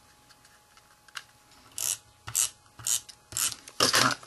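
Adhesive tape runner drawn across card stock in about five quick strokes, each a short ratcheting rasp, starting a little under two seconds in, as a sentiment panel is stuck onto a bookmark.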